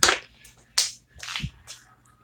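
A small plastic candy tube dropped onto a hard floor: a sharp knock as it lands, followed by a few lighter clicks and knocks as it settles and is handled.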